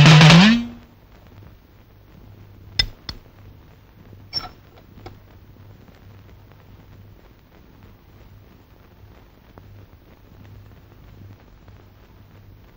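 Indian classical film music, a held note wavering in pitch over accompaniment, stops within the first second. Then a quiet background with a faint low hum and a few faint sharp clicks about three and four and a half seconds in.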